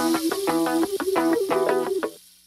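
Background music: a fast run of pitched notes with no heavy low beat.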